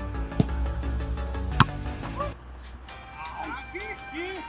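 Background music with two sharp hits about a second apart, the second the louder: a football being struck.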